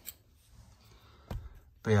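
Two light clicks of handling noise, a little over a second apart, over a quiet background, then a man's voice begins near the end.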